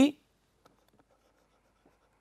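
Faint scratching and light ticking of a stylus writing by hand on a pen tablet.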